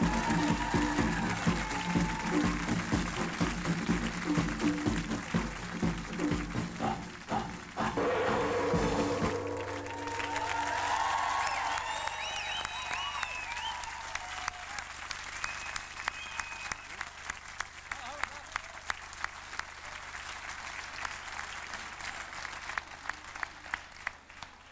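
Backing music with a steady beat, ending about nine seconds in, followed by a studio audience applauding and cheering, slowly dying down.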